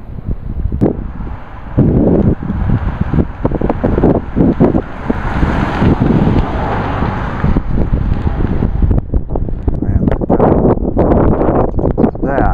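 Wind buffeting the camera microphone in loud, uneven gusts, with a stronger gust around the middle.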